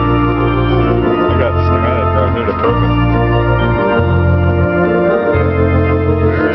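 Hammond tonewheel organ playing held chords over low bass notes that change about every second to second and a half.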